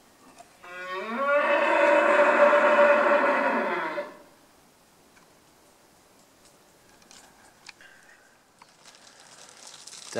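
A wapiti bull bugling once: a single call about three seconds long that rises in pitch at its start and then holds steady before cutting off.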